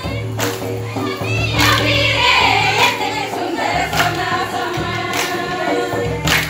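Group of voices singing a folk song in chorus over a steady percussion beat, with a sharp stroke about every second and a low drum thump.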